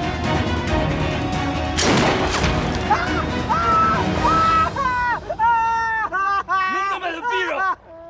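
Tense film-score music, broken by a sudden boom about two seconds in. After that the music thins and a man cries in loud, broken sobs that stop just before the end.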